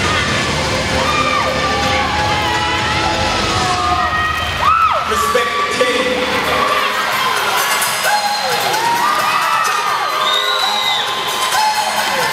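Audience cheering, with many high shrieks and whoops, over loud dance music. A sharp hit stands out a little before halfway, and the music's bass drops away soon after, leaving the crowd's screaming on top.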